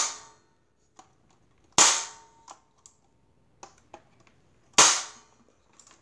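2001 Yejen Trendsetter electric stapler firing three times, about three seconds apart, each a loud sharp snap with a short ringing tail, and a few light clicks between the shots.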